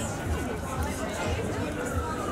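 Chatter of fair-goers talking among the stalls, with a low thud repeating about twice a second underneath.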